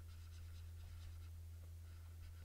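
Quiet room tone with a steady low hum and faint light scratching, like a hand working a mouse or stylus across a desk pad.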